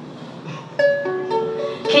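Ukulele plucked: a few notes picked in turn, starting about a second in and left ringing, a quick check that the instrument can be heard.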